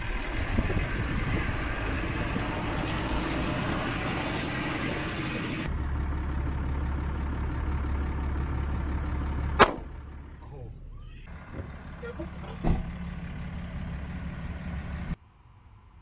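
Steady vehicle driving noise, then a handgun fired: one sharp, loud crack about ten seconds in, with a fainter crack about three seconds later.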